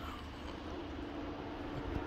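Faint, steady low outdoor rumble under a stormy sky, with a faint hum joining about a quarter of the way in.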